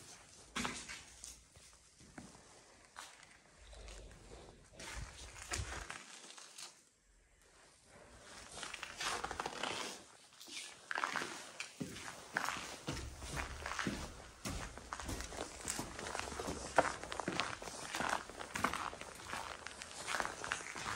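Irregular footsteps on a concrete floor strewn with snow and debris. They are sparse at first, pause briefly, then come faster and thicker through the second half, with a low rumble coming and going underneath.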